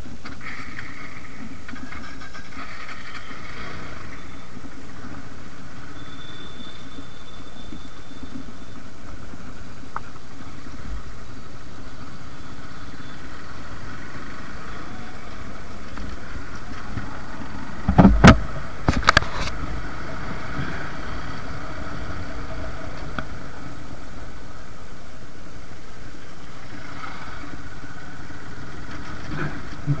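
Suzuki Gixxer's single-cylinder engine running steadily at low road speed on a rough road. About two-thirds of the way through, a quick cluster of three or four sharp knocks stands out as the loudest sound.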